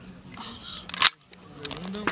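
A single sharp, loud bang about a second in that cuts off abruptly, over low range background noise.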